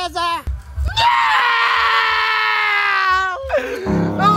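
A teenage boy screaming: a couple of short cries, then one long drawn-out scream of about two and a half seconds whose pitch slowly sinks, and a brief cry near the end.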